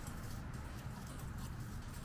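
Low, even scratching of a broom brushing lime leaves across a grating, where the leaves keep sticking in the bars.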